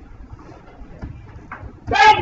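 A pause in speech: low room noise with a few faint knocks, then a man's voice starts loudly just before the end.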